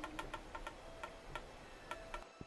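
Faint run of small, dry creaking clicks, irregularly spaced and pausing briefly after the middle: foley of a wooden arrow shaft and its string binding being handled and bent.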